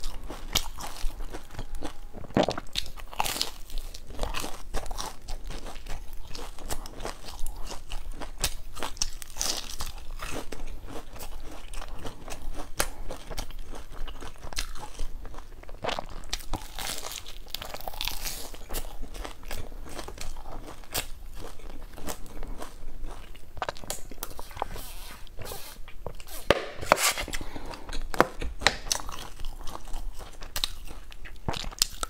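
A person biting into and chewing crusty, crumb-coated round bread, with many short crackly crunches spread through the chewing.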